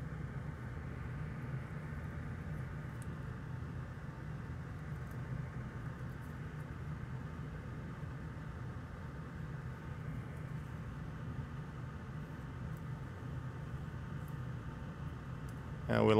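A steady low hum with a faint hiss, like a fan or small machine running, and a few faint small ticks scattered through it.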